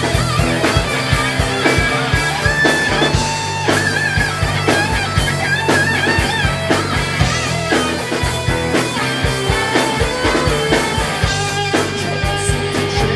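Live rock band: an electric guitar plays a lead solo of held notes with bends and vibrato over bass guitar and a steady drum beat.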